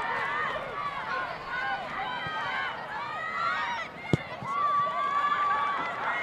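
Players and spectators shouting and calling across a soccer pitch, many high voices overlapping. About four seconds in there is one sharp thud of a ball being kicked clear, followed by a single long held call.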